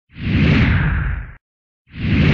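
Whoosh sound effects for an animated title card: one whoosh swells and cuts off after about a second and a half, a short silence follows, and an identical whoosh begins near the end.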